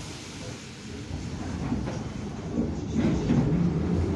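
Metro train starting to move off: a low rumble that builds steadily in level, with a faint steady hum joining in about three seconds in.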